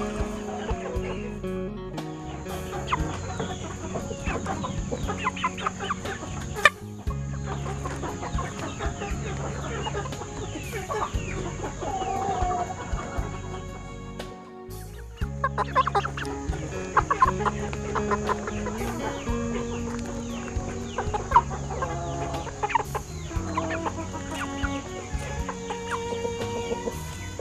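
Young Saigon gamefowl clucking in many short, irregular calls, over background music with steady low notes.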